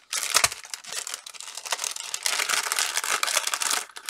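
Clear plastic cellophane bag crinkling and crackling as it is handled and opened by hand, busiest in the second half.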